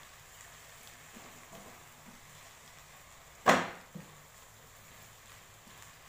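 Quiet stirring in a frying pan, with a single sharp knock of the spatula against the pan about three and a half seconds in that rings briefly.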